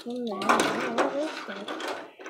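Small die-cast toy cars rolling and rattling across a metal tool-cart tray, with a child's voice over it.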